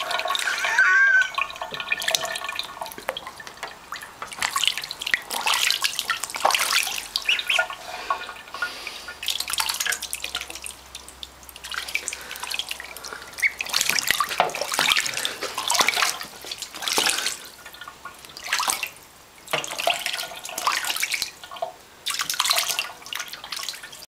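A duckling splashing and bathing in water in a stainless-steel kitchen sink, in irregular bursts of splashes and drips with short quieter gaps between them.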